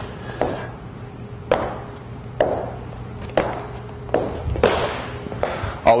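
Sneakered feet landing on a wooden gym floor during Spiderman climbs, a thud about once a second as the feet alternate up beside the hands, six in all.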